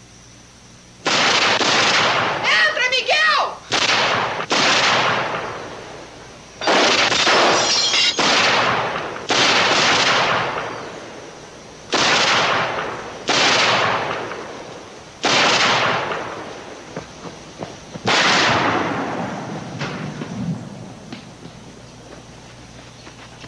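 About ten gunshots fired at irregular intervals, each ringing out for a second or more. A short shout comes between the first and second shots.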